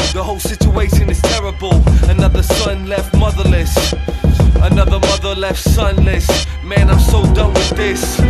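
Hip hop track with a heavy bass and drum beat and rapping over it.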